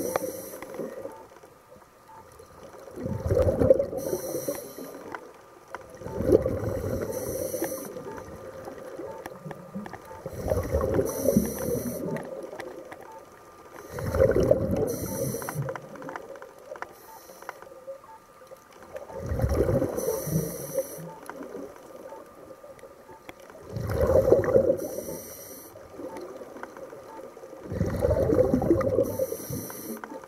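Scuba breathing through a regulator underwater: a short hiss of air on each breath and a rush of exhaled bubbles, repeating about every four to five seconds.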